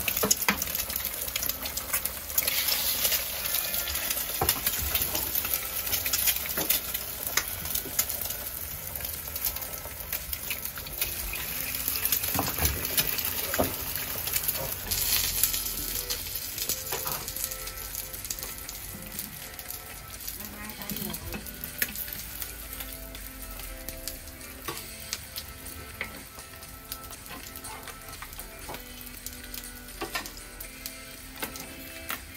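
Eggs frying in oil in cast-iron four-cup egg pans over gas burners, a steady sizzle that is loudest in the first half and softens later. Occasional sharp clicks and knocks come from the pans and utensils being handled.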